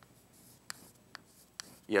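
Chalk writing on a chalkboard: a faint scratch with three sharp taps about half a second apart as the chalk strikes the board.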